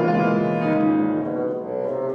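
Grand piano and bassoon playing classical chamber music together, the bassoon holding long notes over the piano.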